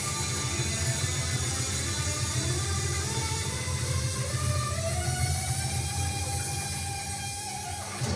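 Distorted electric guitar played through an amp, with sustained low chords; near the middle a note slides up and is held until just before the end.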